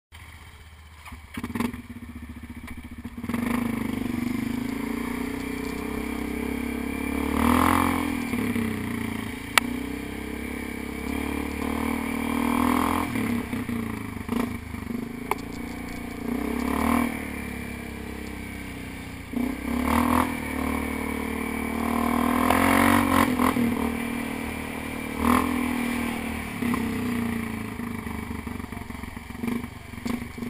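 ATV engine running under the rider, quieter at first, then picking up about three seconds in and revving up and back down every few seconds as the throttle is worked along a rough trail. A single sharp click about ten seconds in.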